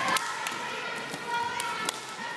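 Children running and skipping across a gym floor and exercise mats: a scatter of light footfalls in a large hall, with faint children's voices behind.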